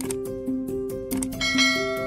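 Intro music with a steady repeating pattern of plucked notes. A click comes near the start, and about one and a half seconds in a bright bell ding rings out over the music, the sound effect of a subscribe-and-notification-bell animation.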